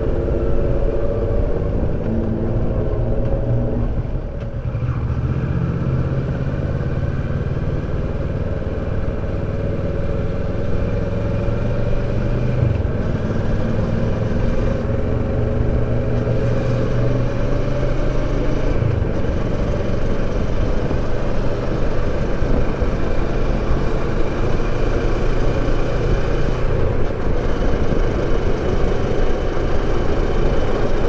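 Kawasaki Versys 650's parallel-twin engine running on the move, over steady low wind and road rumble. The engine note eases off over the first few seconds, dips briefly about four seconds in, then climbs again as the bike picks up speed and holds steady.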